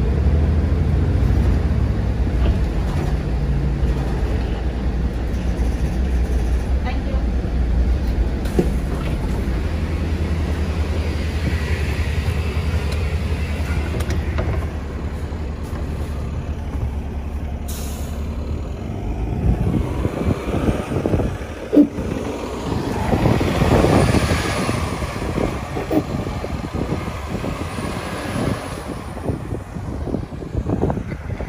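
City bus engine running with a steady low hum, heard from inside the cabin. After about fifteen seconds the hum ends and irregular knocks and rustles follow.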